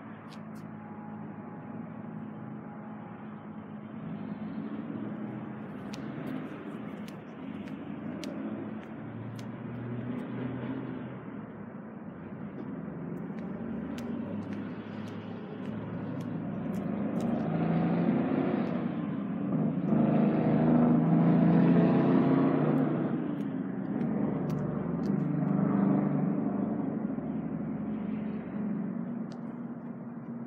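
A motor vehicle engine running with a steady low hum, swelling louder in the middle and easing off again toward the end.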